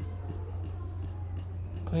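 A steady low electrical hum in the recording, with faint scratchy noises over it and no speech.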